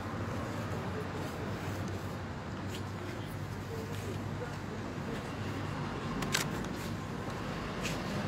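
Quiet open-air background with a steady low hum and a few short, faint clicks.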